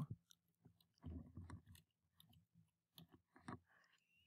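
Faint computer keyboard typing: two short runs of key clicks, about a second in and again about three seconds in.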